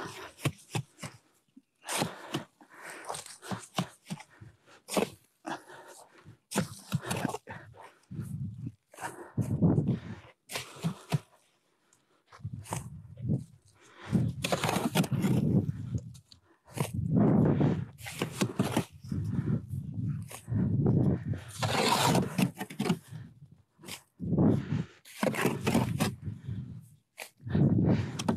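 A shovel scraping and scooping wet adobe mud (soil mixed with water) in a wheelbarrow, and mud dropped into a wooden brick mold, in irregular bursts.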